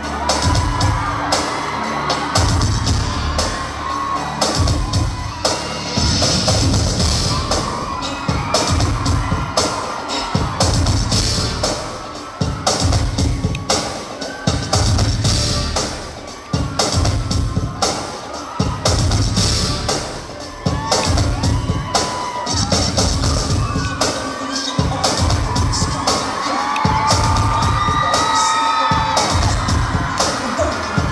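Loud dance music over a concert sound system, with a heavy, steady beat, and an audience screaming and cheering over it.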